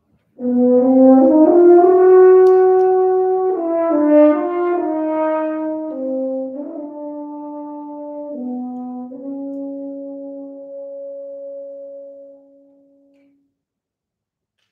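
Solo French horn, unaccompanied, playing a slow phrase of held notes: it climbs to a loud sustained note about two seconds in, then steps down through several notes, growing gradually softer, and ends on a long held low note that fades out near the end.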